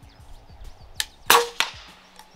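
Airgun shot: a short crack about a second in, then a louder crack with a brief ring and a smaller crack right after it.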